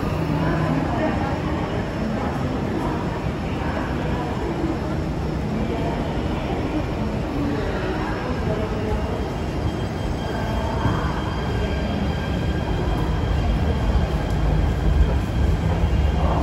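Metro station ambience: a steady low rumble and hum with indistinct chatter of passengers, the rumble growing louder near the end.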